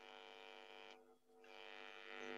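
Near silence, with a faint steady electrical hum that drops out for about half a second about a second in.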